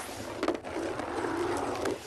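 A bingo ball rolling and rattling in the draw drum as the next ball is drawn, a continuous rolling noise with a sharp click about half a second in.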